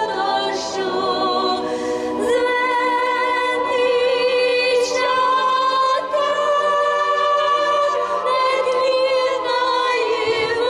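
A woman singing a Ukrainian song solo and unaccompanied into a microphone, in long held notes with vibrato.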